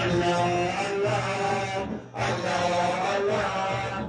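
A large group of men and boys chanting together in unison with long held notes. The chant breaks off briefly about halfway through, then resumes.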